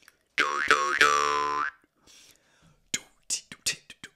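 Jaw harp (a Bebb Johnson in D2) struck three times in quick succession, its low drone holding steady while the overtones sweep up and down, then ringing on for about a second before stopping. From about three seconds in, a run of short, sharp percussive hits starts at a few a second.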